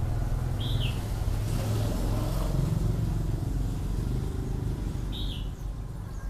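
A steady low rumble, with a bird giving two short, identical chirps: one about a second in and one near the end.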